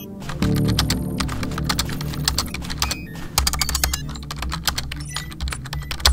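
Rapid typing on a computer keyboard, a dense run of quick clicks, over background music with a steady low bass.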